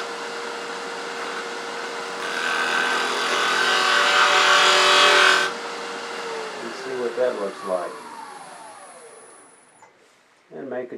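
Wood lathe running with a gouge cutting the spinning off-axis workpiece: a scraping cut over the motor hum, louder in the middle and stopping abruptly about five and a half seconds in. The lathe is then switched off and coasts down, its hum and whine falling in pitch and fading until it stops just before the end.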